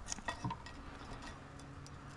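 A few light metal clinks and taps in the first half second as a cast iron exhaust manifold and its metal spacers are handled and knocked against each other.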